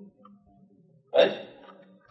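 Speech only: a man says a single short word, "Right?", into a microphone about a second in. Otherwise there is only quiet room tone.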